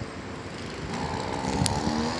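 A motor engine running at a steady pitch, faint at first and growing steadily louder from about halfway in.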